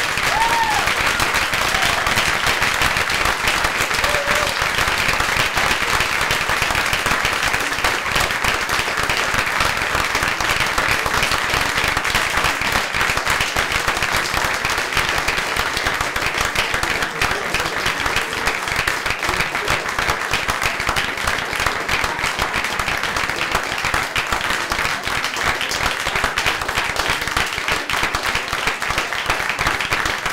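Audience applauding steadily throughout, with a couple of short cheers in the first few seconds.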